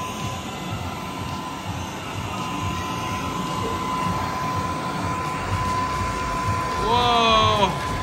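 Steady rushing air from the blower of a soft-play ball table, with a thin steady tone running under it. A short voice call, falling in pitch, comes near the end.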